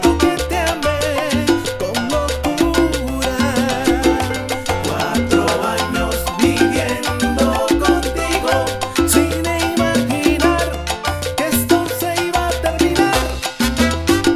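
Salsa band music: a syncopated bass line under steady percussion, with melodic lines playing on top.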